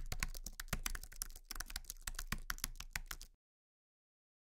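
Computer keyboard typing sound effect: rapid key clicks, about ten a second, with a brief pause about a second and a half in, stopping suddenly.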